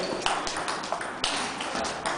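A table tennis ball ticking sharply against bats, table and floor, about a dozen irregularly spaced clicks as a rally plays out and the point ends.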